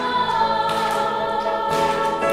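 A woman singing long held notes with grand piano accompaniment.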